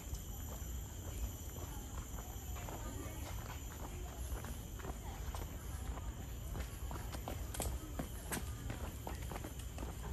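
Footsteps of a person walking along a paved footpath, with irregular sharp clicks, over a steady high-pitched hum.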